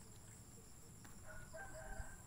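A rooster crowing faintly, one call starting a little past halfway through.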